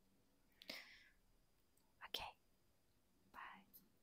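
Near silence broken by three short, faint whispers close to the microphone: about a second in, about two seconds in with a small lip click, and near the end.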